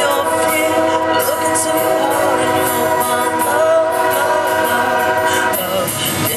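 Live acoustic guitar music with held, wavering pitched tones over it; the tones thin out near the end.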